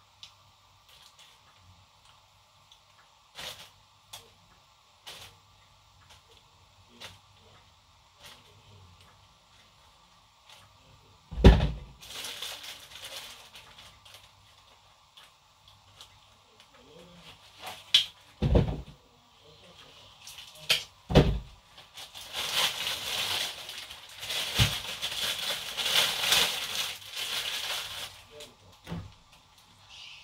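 Fresh sweet corn husks being torn and stripped from the ears by hand: scattered light crackles at first, then rustling, tearing stretches that grow longer and louder in the last third. Three sharp thumps stand out, the loudest a little over a third of the way in.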